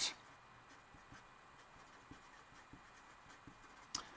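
A felt-tip marker writing block capitals on paper: faint, irregular pen strokes, with a short sharp sound just before the end.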